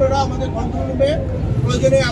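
A man speaking in Bengali into a cluster of microphones, with a steady low rumble of background noise underneath.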